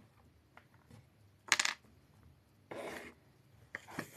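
Short scraping, rubbing noises close to the microphone: a brief sharp one about a second and a half in, the loudest, and a longer, duller one near three seconds, followed by a faint click just before the end.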